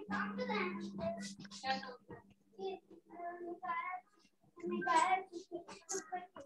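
A child's voice talking in short broken phrases, with a steady low hum under it for the first five seconds.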